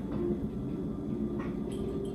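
Steady low hum of room noise, with a few faint clicks as olives are taken out of a small glass jar.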